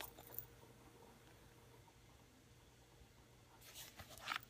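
Near silence: faint room tone, with a few soft handling sounds from a leather wallet being turned in the hands, just at the start and again near the end.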